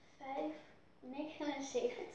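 Only speech: girls' voices talking in Dutch, one naming a price, with short quiet gaps between the phrases.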